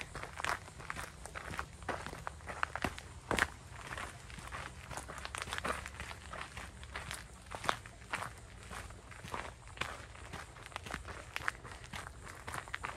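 Footsteps of a person walking at a steady pace along a sandy trail surfaced with crushed gravel and leaf litter, each step a short crunch.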